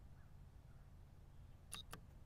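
Near silence with a faint steady outdoor background, then near the end two sharp clicks a fraction of a second apart: a blitz chess move, a plastic chess piece set down on the board and the chess clock's button pressed.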